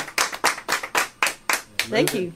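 Small audience applauding, the handclaps thinning out and dying away.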